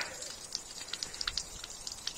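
Soft, irregular pattering of water droplets and small splashes on a shallow pond as it fills from a hose, many light ticks close together.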